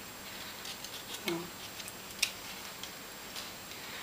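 Light, sparse clicks and ticks of thin card pieces being handled and slotted together by hand, the sharpest a little past halfway.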